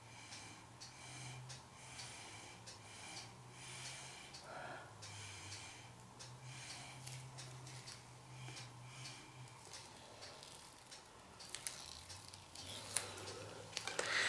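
Faint, short, repeated puffs of a person blowing on wet acrylic paint to spread it across the canvas, over a low steady hum, with a few sharp clicks near the end.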